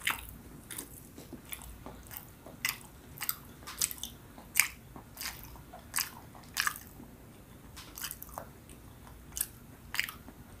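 Close-up chewing of soft, chewy Filipino rice and cassava cakes (kakanin), with sharp mouth clicks and smacks coming irregularly about twice a second.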